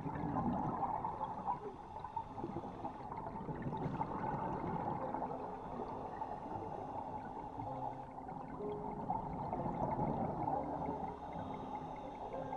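Water recorded underwater: a steady, busy, muffled rush and gurgle.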